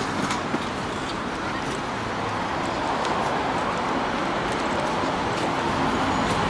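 Steady street traffic noise from passing and idling cars, with a couple of light knocks about half a second in.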